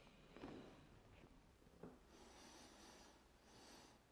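Near silence: faint room tone with a couple of soft knocks and some faint hiss, likely camera-handling noise.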